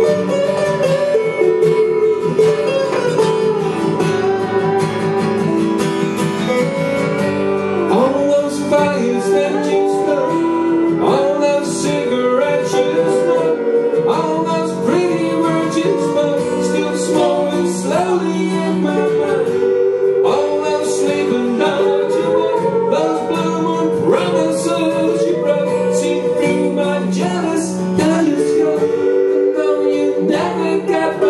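Acoustic guitar strumming chords under a lap slide guitar playing the lead, its notes repeatedly sliding up into pitch, in an instrumental break of a live folk song.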